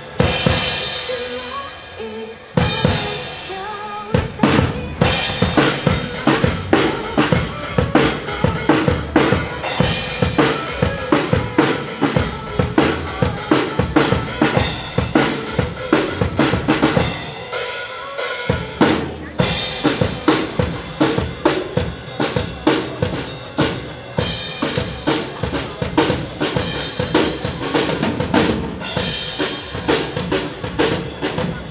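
Drum kit played live: a fast, steady run of kick and snare strokes with rimshots, over a backing track. A little after halfway the kick drops out for about a second, then the beat comes back.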